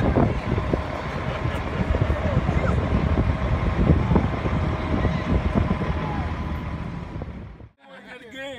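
Outdoor street noise: a loud, uneven low rumble with faint voices in it, cut off suddenly near the end.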